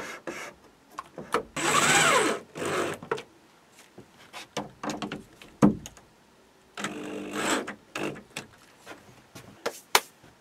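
Handheld electric drill driving screws through a wooden batten into the van's ceiling beams, in two short runs, about two seconds in and about seven seconds in, its motor pitch rising and falling with the trigger. A sharp knock and smaller clicks and rubs of the board and wood come between the runs.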